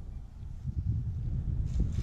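Wind buffeting an action-camera microphone: a gusting low rumble that rises and falls.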